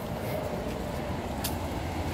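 Steady low rumble of background noise with one sharp click about one and a half seconds in.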